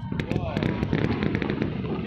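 Aerial fireworks bursting over a steady rumble of bangs, with a quick run of sharp crackles in the first second.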